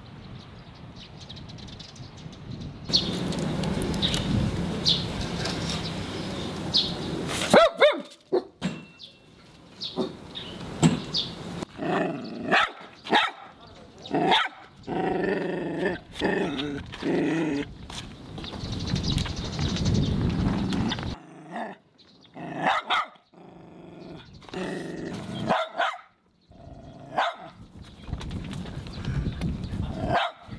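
A small shaggy dog barking repeatedly at a cat in short separate barks and clusters of barks, starting about seven or eight seconds in. Before the barking starts there is outdoor background noise with a few bird chirps.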